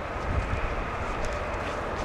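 Steady outdoor background noise: a low rumble under an even hiss, with a few faint clicks.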